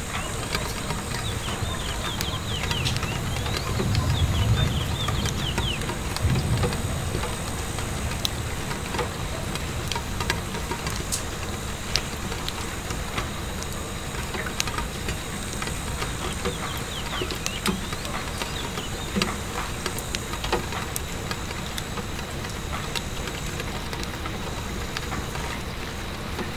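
Steady rain pattering against a window pane, mixed with scattered sharp pops and crackles of a wood fire. A low rumble swells for a few seconds near the start.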